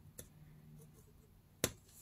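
Quiet room tone with a faint click early on and one sharp tap near the end, from a ball-tipped scoring tool and cardstock being handled on a hard tabletop.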